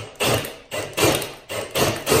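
Metal chains of a FlexShaft chain knocker rattling and slapping in an even rhythm, about two knocks a second.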